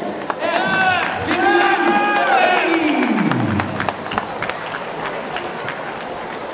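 Small arena crowd cheering the announced winner, with long shouted whoops, the last dropping in pitch about three seconds in, followed by scattered clapping.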